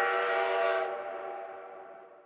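A train horn sound effect: one long, steady blast of several tones at once, which fades away over the last second.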